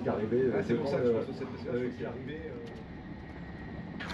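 Faint voices talking inside a moving TGV high-speed train carriage, over the train's steady running noise; the voices die away in the second half, leaving mainly the running noise.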